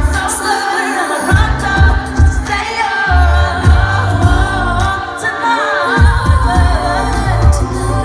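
Live pop song: a female lead vocal sung into a handheld microphone over a full band of drums, bass, electric guitar and keyboards, with heavy bass pulses underneath, played loud through a venue PA.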